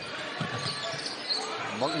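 A basketball being dribbled on a hardwood court, a few low bounces about half a second in, over the steady murmur of an arena crowd.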